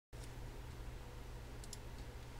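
Faint computer mouse clicks, a close pair near the end, over a low steady electrical hum.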